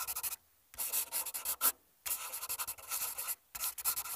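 Writing sound effect: a marker scratching across a board in quick strokes, in about four bursts with short pauses between them.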